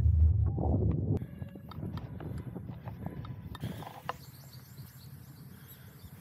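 Footsteps on a hard walkway: a run of short, uneven clicks. For about the first second, a loud low rumble of wind on the microphone covers them.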